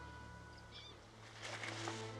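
A few faint, short bird chirps a little under a second in, over quiet outdoor ambience. Near the end a brief rush of noise comes in, and a low steady hum starts about halfway through.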